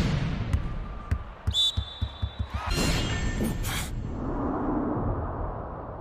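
Volleyball slamming into the court floor and then bouncing, a run of low thuds over the first couple of seconds. A brief high squeak comes partway through, and a steady murmur of hall noise follows in the second half.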